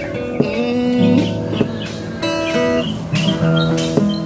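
Yamaha acoustic guitar played solo with no singing: picked notes and chords, with a few notes sliding in pitch.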